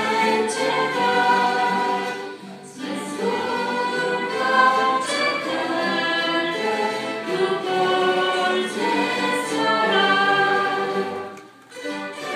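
Voices singing a hymn together with a string orchestra playing along, in sustained phrases with a short break about three seconds in and another just before the end.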